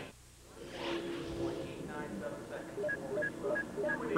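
Faint, indistinct voices over a steady low drone.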